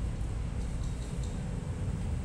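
Steady low background rumble, with a few faint clicks about a second in.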